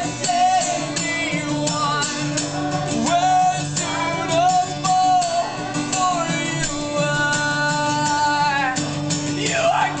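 Live acoustic guitar strummed steadily under a man singing long, held notes without clear words.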